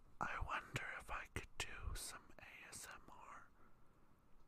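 A person whispering a few short phrases, dying away near the end.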